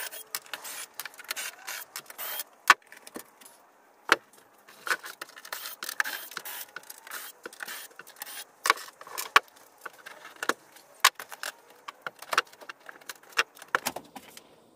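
Sheet-metal access doors of an air handler being unfastened and lifted off: irregular metallic clicks, rattles and knocks, with two sharper knocks a few seconds in.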